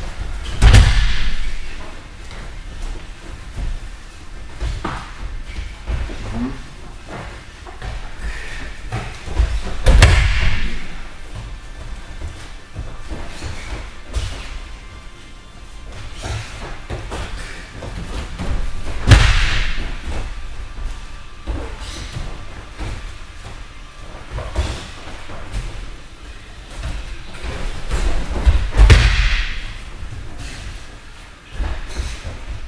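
A person being thrown onto a padded wrestling mat in a practice drill: four heavy thuds, about one every nine to ten seconds, each preceded by a brief scuffle of feet and jackets and followed by a short echo of the hall.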